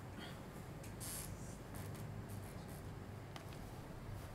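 Quiet room tone with a steady low hum, broken by a few faint clicks and a brief soft hiss about a second in, from a laptop's keys and trackpad being worked to scroll a document.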